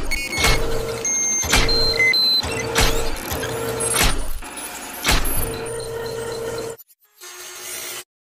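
Sound effects of robotic arms: a steady mechanical motor hum, like servos whirring, broken by sharp metallic clanks roughly once every second. The hum stops shortly before the end.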